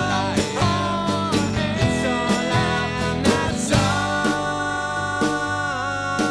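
Rock band playing live: electric guitars over bass and drums, with guitar notes bent in pitch.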